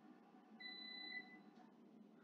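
Near silence: room tone with one faint, steady high-pitched tone of under a second, about halfway through.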